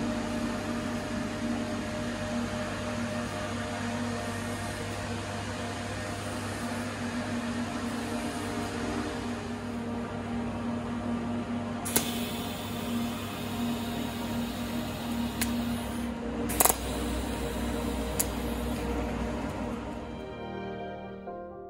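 Steady hum and hiss of MIG welding equipment running in a small workshop, with a handful of sharp metal clicks in the second half.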